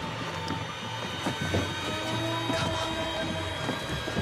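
Horror film soundtrack: a low rumbling drone with a few held tones above it and scattered faint knocks and rustles.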